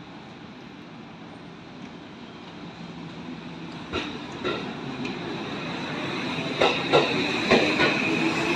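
Tokyo Metro 16000 series electric train pulling away from the platform, its running noise growing steadily louder. From about halfway in, the wheels clack over the rail joints, and near the end the motor whine starts to rise in pitch as the train gathers speed.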